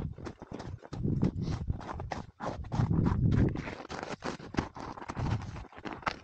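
Hiking boots crunching step after step in packed snow on a trail, several steps a second, over a low rumble.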